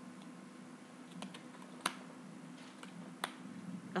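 A deck of tarot cards handled and shuffled by hand: faint rustling with a few sharp card clicks, the loudest a little under two seconds in.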